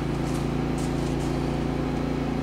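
Steady machine hum with a low droning tone, even and unchanging throughout.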